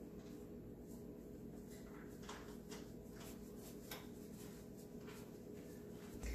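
Faint, soft taps and rattles from a seasoning shaker being shaken over raw chicken, heard over a steady low room hum.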